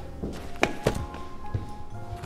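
Background film score of sustained, held tones, with three soft knocks over it in the first three-quarters of a second or so.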